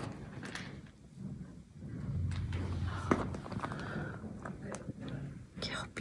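Faint, indistinct speech in the background, with scattered low handling or movement noises.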